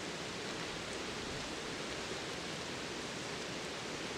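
Steady, even outdoor background noise: a constant rushing hiss with no distinct events in it.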